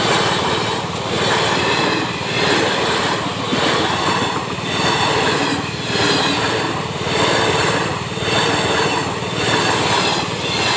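Passenger coaches of an express train passing at speed without stopping: a continuous din of steel wheels running on the rails that swells and eases about once a second as each coach goes by.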